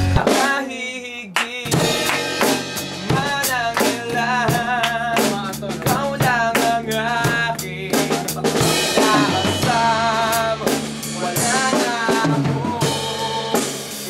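Rock music: a male voice singing a melody over a drum kit, with a steady bass line underneath.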